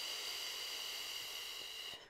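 A woman's long, steady hissed exhalation, with a thin whistle in it, pushing air out at even pressure from the rib-cage and belly muscles to show breath support for flute playing. It cuts off at the end.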